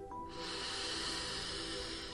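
A slow, drawn-out breath in through the nose, the deep 'smell the flower' inhale of a calming breathing exercise, lasting about two seconds over soft background music with held tones.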